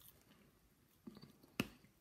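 A person chewing a mouthful of fish and chips: faint soft, wet mouth sounds, with one sharp click a little past halfway.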